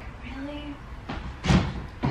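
A single dull thump, like a knock or bump, about one and a half seconds in, over faint voices in a quiet room.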